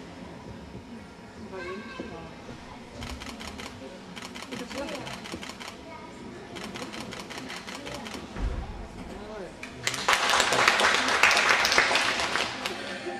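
Applause breaking out suddenly about two seconds before the end, the loudest sound here, as a young gymnast finishes her bar exercise. Before it, voices murmur in a large hall, and a long run of quick, even clicks comes and goes in the middle, several a second.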